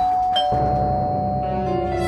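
Electronic doorbell chime: a ding-dong of two falling tones that ring on, set off by a press of the wall button, heard over background music.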